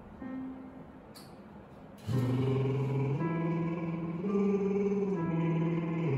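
Electronic keyboard: one short soft note, then from about two seconds in a run of held chords that change about once a second, setting the pitch for a vocal warm-up exercise.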